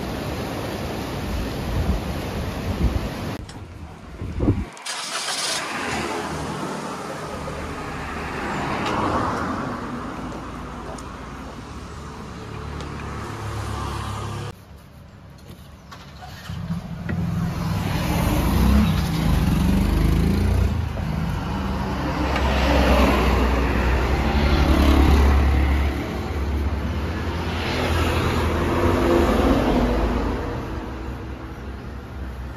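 Surf washing over rocks, then road traffic: vehicles passing one after another with a low engine rumble that swells and fades every few seconds.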